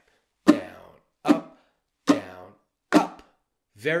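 Ukulele strings muted by the fretting hand and strummed four times at an even pace, a little under a second apart: down with the index finger, up with the index, down with the index, up with the thumb. Each stroke is a short percussive hit with a brief muffled ring.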